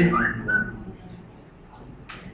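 A brief two-note whistle: a quick rising note, then a short steady note, with the end of a man's voice at the start.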